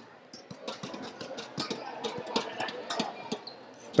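Handball game sounds on an indoor court: a run of scattered light knocks and slaps from players' feet and the ball on the hall floor, with faint voices in the hall.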